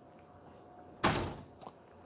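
A door closing with a single thud about a second in, dying away quickly, followed by a faint click.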